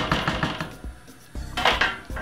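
Cooked penne being tipped and scraped by hand out of a pot into a plastic bowl: a quick run of clattering knocks, a pause, then a short scraping rustle near the end.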